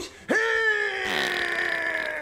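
A comic voice holds one long, drawn-out vocal cry or groan for about two seconds, its pitch slowly falling.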